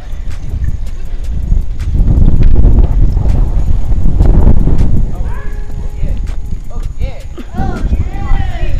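Heavy wind buffeting on a camera microphone while riding a bike over asphalt, a loud low rumble that swells about two seconds in, with scattered clicks from the bike.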